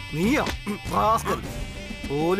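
A man's voice speaking in short phrases over soft background music with steady held tones.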